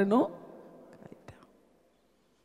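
A woman's voice through a microphone ends a word just after the start, then a pause: faint room hum with a few soft clicks near the middle, fading to near silence.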